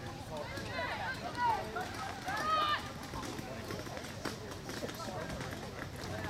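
Voices calling out across an outdoor soccer field during play, with two louder shouts about a second and a half and two and a half seconds in, then only faint, scattered field noise.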